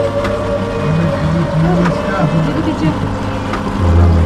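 A low voice speaking indistinctly over a steady low drone, with a few faint clicks and a brief louder low sound near the end.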